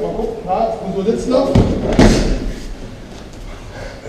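Two heavy thumps about half a second apart, the second the louder: an aikido partner's body hitting the tatami mats in a breakfall as he is thrown.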